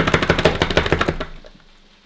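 A fast, even rattle of sharp clicks, about a dozen a second, that fades out about a second and a half in.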